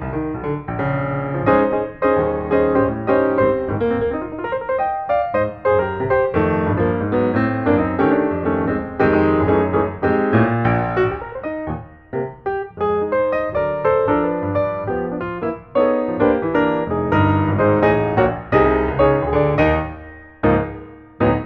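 Background piano music: a quick, even melody of keyboard notes with chords underneath, briefly thinning about twelve seconds in and fading near the end.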